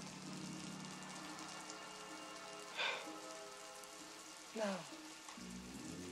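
Steady rain falling, under a low held chord of sustained music tones from the film score. A man's voice starts a word near the end.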